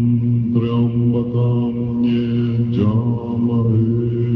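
A group of Tibetan Buddhist monks chanting prayers in unison, a steady low drone with other voices rising and falling above it about half a second in and again near three seconds. It is heard through a hand-held tape recording.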